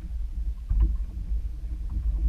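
Low rumble of a small aluminium fishing boat rocking on open water, with water lapping at the hull and a few light knocks about a second in.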